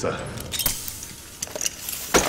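Metal jingling and clinking, like keys: a few sharp rattling clicks about half a second in and again near the end, over a low hum.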